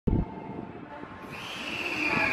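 JR 383 series 'Wide View Shinano' electric train rolling slowly into a station platform. Its running rumble grows, and about two-thirds of the way in a high brake squeal sets in and slowly falls in pitch as the train slows to a stop. There is a short loud sound at the very start.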